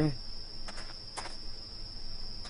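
A steady high-pitched whine over a faint hiss, with a few faint clicks.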